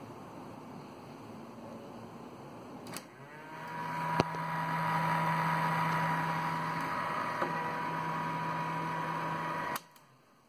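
Sansui mini system's cassette deck transport running. A button click about three seconds in, then the motor whine rises in pitch and holds steady with a low hum. It stops abruptly with a click near the end.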